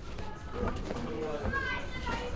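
Background voices of several people calling and chattering across a busy training gym, with a couple of faint thuds.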